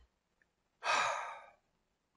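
A man's single breathy sigh about a second in, fading away over about half a second.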